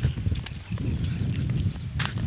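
Wind buffeting an open-air camera microphone with a gusting low rumble, and faint short high chirps of small birds over it.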